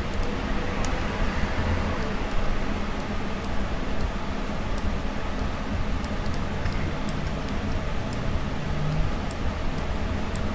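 Scattered, irregular clicks of a computer mouse and keyboard over a steady low rumble of background noise.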